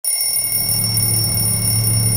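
A steady electronic drone: a low hum under several high, thin tones.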